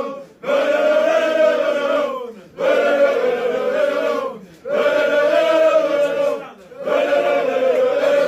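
A group of men singing a chant-like song together, unaccompanied. It comes in repeated phrases of about two seconds each, with short breaks between them.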